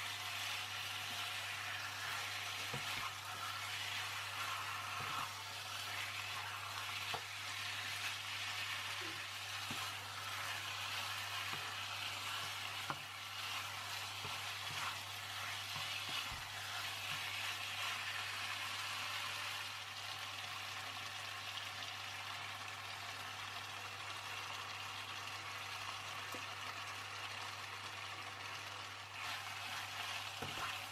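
Diced chicken sizzling steadily as it fries in a nonstick pan, stirred with a plastic spatula that gives a few light scrapes and taps against the pan.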